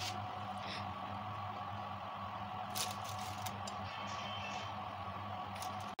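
A steady hum of unchanging tones, with a few faint rustles and light taps as shredded mozzarella is scattered over a glass baking dish.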